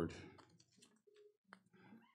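Faint clicks and rustles of a folded paper sheet being handled and opened out.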